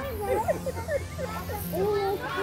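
Many children's voices chattering and calling at once, overlapping short calls.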